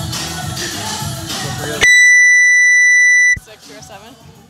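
Music with a beat, cut off about two seconds in by a loud, steady, high-pitched electronic beep that lasts about a second and a half; after it only low background noise remains.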